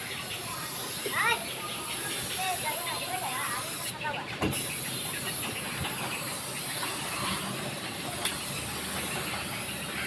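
Compressed-air paint spray gun hissing steadily as it sprays paint onto a car's boot lid, with a brief break in the spray about four seconds in.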